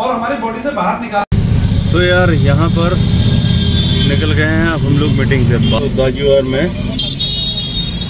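Steady low rumble of engine and road noise heard from inside a moving car, starting abruptly about a second in, with a voice over it.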